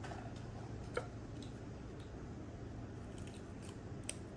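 Faint clicks and rustles of hands working wired bonsai branches, with one sharper click about a second in.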